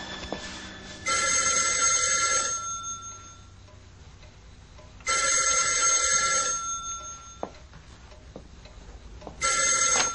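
Telephone ringing: three rings about four seconds apart, each lasting about a second and a half.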